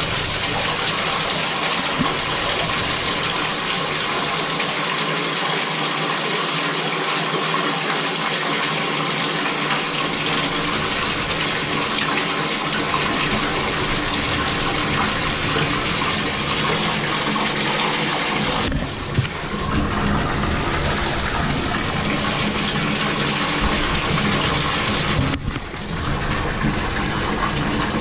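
Water gushing at full line pressure out of an open shower valve body, with the cartridge removed, through a blow tube into a bathtub, flushing debris out of the supply lines. The steady rush turns duller about two-thirds of the way through.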